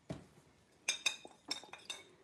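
A spoon stirring acrylic paint in a jar, knocking and clinking against the jar's side several times, most of them in the second half.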